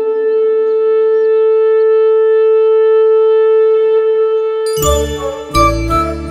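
A small hand-held horn blown in one long, steady, unwavering note that breaks off after nearly five seconds. Loud, deep drum hits with music then come in near the end.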